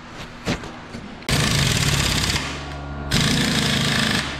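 Impact wrench hammering on old, stubborn leaf-spring U-bolt nuts on a truck's rear axle. It starts suddenly about a second in, eases off briefly and then hammers again at full force.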